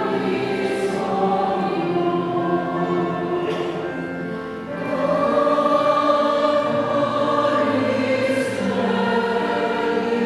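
Church choir singing sacred music in long held notes. It dips slightly just before the middle, then swells louder about halfway through.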